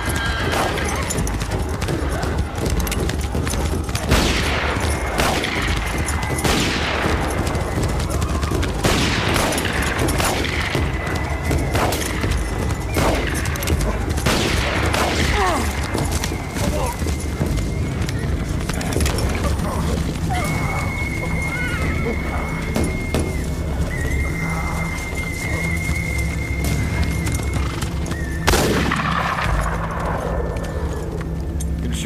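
Repeated gunshots during a horseback chase, a dozen or so spread through, each ringing out with a falling echo, the loudest about 4 seconds in and near the end. Galloping horses and horse whinnies run under them.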